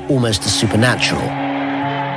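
A voice for about the first second, followed by held, steady musical notes.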